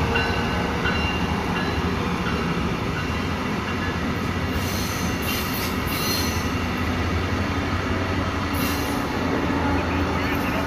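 Brightline passenger train passing close by: a steady rumble of wheels on rail with a low drone, and a few brief high-pitched bursts from the wheels in the middle and near the end.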